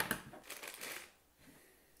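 Faint rustling and handling of small electronics parts, cables and a circuit board, as they are taken from a cardboard box and laid on a wooden table. There is a light click at the start, and the sound dies away after about a second.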